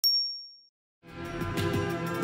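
A single bright ding, the notification-bell sound effect of a subscribe animation, struck at the start and fading out within about half a second. About a second in, outro music with a steady beat begins.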